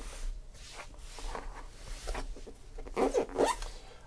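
A knife blade slitting the packing tape along the seam of a cardboard case, a rasping, zipper-like scrape with small clicks and brief squeaks from the tape and cardboard as the box is handled.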